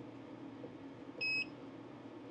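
A single short, steady electronic beep from the laser engraver about a second and a quarter in, over the machine's steady low hum.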